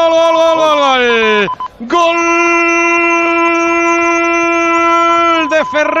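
Spanish radio football commentator's drawn-out goal cry, '¡gooool!'. One long held note slides down in pitch and breaks off about a second and a half in, then after a quick breath a second long held note runs until shortly before the end.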